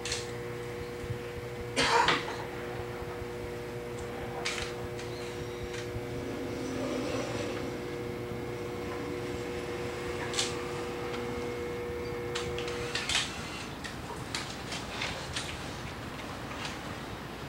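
Electric potter's wheel running with a steady faint hum that stops about thirteen seconds in, under scattered knocks and clicks. The loudest knock comes about two seconds in.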